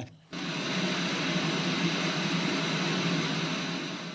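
Steady machine-like whirring noise, a sound effect in a played TV comedy sketch clip, starting suddenly after a short gap and beginning to fade near the end.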